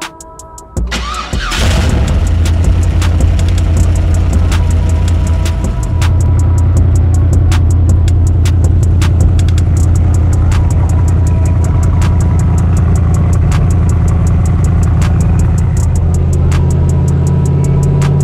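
A car engine starting about a second in, then running loud and steady at idle with a low exhaust note. The note shifts slightly about six seconds in and again near the end.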